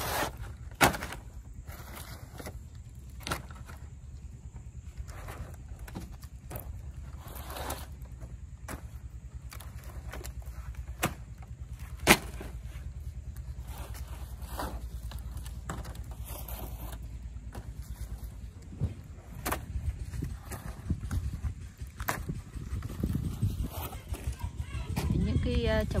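Dry, sun-hardened sheets of thin wood veneer clacking and rustling as they are gathered and stacked by hand, with sharp knocks scattered through, the loudest about a second in and about twelve seconds in, over a steady low rumble.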